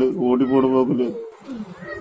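A man's wailing voice, two drawn-out cries held at a steady pitch through the first second, then fading to quieter sounds: the voice of a man in grief.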